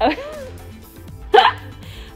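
A woman says "okay", then gives a short sharp vocal yelp about a second and a half in, over background music.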